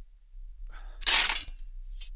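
A man's short, forceful breathy exhale, a huff of amazement, lasting under a second about halfway through.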